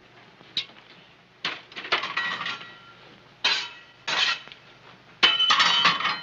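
Metal fire irons and a coal scuttle clinking and clattering at a fireplace hearth as it is cleaned out. It is a run of sharp metallic knocks in about six bursts, several ringing briefly, the busiest near the end.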